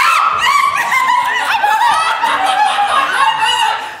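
Excited, high-pitched laughter picked up close by a handheld microphone.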